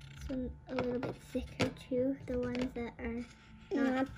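A child's voice speaking or humming softly in short phrases, with a light tap about one and a half seconds in.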